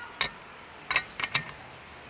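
JetBoil Flash stove burner being screwed onto the threaded valve of its fuel canister: a few short, sharp metal-and-plastic clicks as the parts turn and seat, most of them bunched about a second in.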